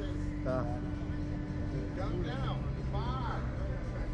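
Steady low machine hum from the Slingshot ride's machinery, its held tone stepping down in pitch about two seconds in, with a few short vocal exclamations over it.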